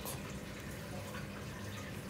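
Steady low background noise: a faint even hiss with a low hum underneath, and no distinct event.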